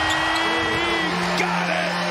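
Arena sound system playing long held music notes over a crowd cheering and whooping, the home crowd's celebration of a made three-pointer.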